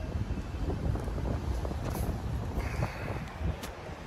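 Wind rumbling on a phone's microphone over the low, steady noise of city street traffic, with a few faint handling clicks as the phone is held and touched.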